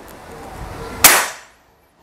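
A single shot from an FX Impact MK2 PCP bullpup air rifle about a second in: one sharp report with a short tail. The pellet clocks 891 fps on the chronograph, lower than earlier shots because the rifle's air pressure is running down.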